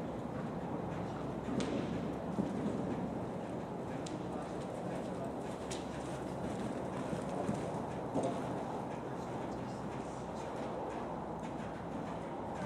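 Hoofbeats of a horse cantering on the sand surface of an indoor arena, over a steady hall hum with faint voices. A few sharp clicks stand out, the clearest about four and six seconds in.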